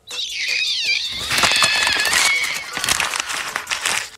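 A high-pitched, wavering cry that slides down in pitch over a loud rushing noise, a cartoon sound effect as the character vanishes.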